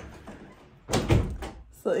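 A door shutting with a loud thump about a second in, after a short click at the start.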